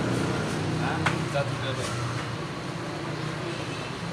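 Voices talking over a steady low hum, with one sharp click about a second in.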